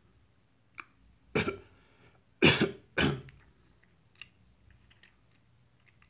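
A person coughing: a short run of three or four coughs starting about a second and a half in, followed by a few faint clicks.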